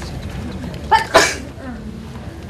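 A single sneeze about a second in: a short sound followed at once by a louder, sharper burst.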